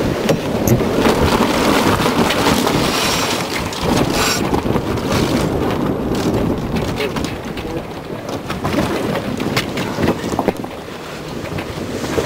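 Wind buffeting the microphone and water rushing along the hull of an Islander 26 sailboat sailing fast in a strong breeze, with a few short knocks from the deck and rigging.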